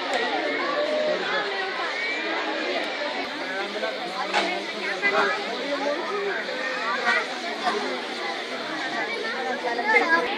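Babble of many people talking at once, a steady murmur of overlapping voices with no single voice standing out.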